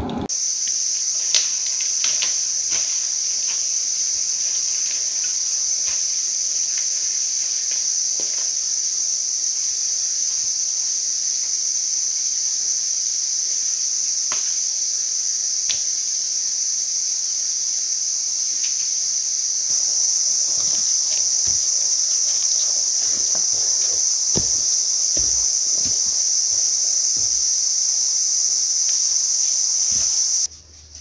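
A steady, high-pitched chorus of cicadas in native bush, unbroken and a little louder in the last third. Faint scattered clicks and rustles sound underneath.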